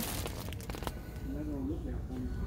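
Plastic film wrapper of a pack of pads crinkling as it is handled, with a few faint clicks in the first second, over a low store background and a faint distant voice.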